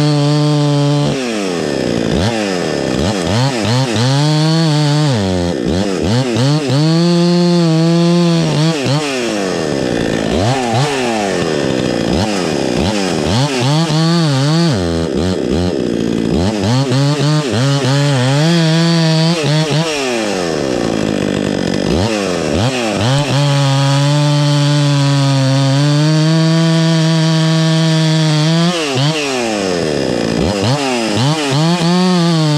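Husqvarna 266XP two-stroke chainsaw cutting through a log: long stretches at full throttle, with the revs dropping and climbing back about six times as the chain loads up in the wood. The owner says the chain's rakers were filed too low, so it bites.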